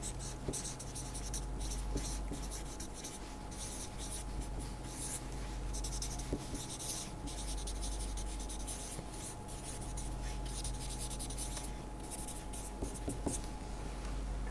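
Felt-tip marker writing on paper: a run of short, irregular scratchy strokes as words and symbols are written out by hand.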